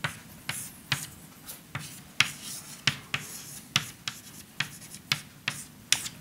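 Chalk writing on a blackboard: irregular short taps and scratches, about two a second, as the strokes go down.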